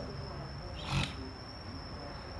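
A steady high-pitched whine over a low hum, with one short noise about a second in.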